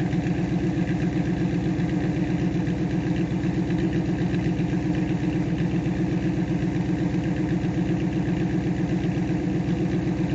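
1995 Pontiac Trans Am's LT1 V8 idling steadily, heard from behind the car through its MagnaFlow exhaust, with a rapid, even exhaust pulse.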